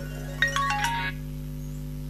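A short run of about five bell-like electronic chime notes stepping down in pitch, starting about half a second in and over within a second, over a steady low hum.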